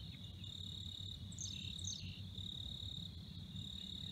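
Insects trilling in the marsh grass: a faint, high, steady buzz that breaks off briefly every second or so. Two quick falling chirps come about a second and a half in, over a low rumble.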